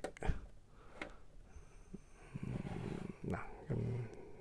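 Plastic toy parts handled by hand, with a few sharp clicks in the first second as a translucent effect-part disc is fitted onto its clear display-stand arm. Brief low vocal sounds from the man come near the end.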